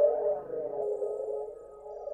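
Electronic music: sustained, slightly wavering tones in the middle range, with no clear beat, easing a little in volume in the second half.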